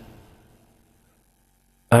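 A pause in a man's speech: his voice trails off with a short echo in the first half second, then near silence with a faint room hum until speech starts again near the end.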